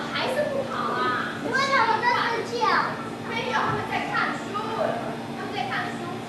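Speech: a woman talking animatedly, with young children's voices joining in.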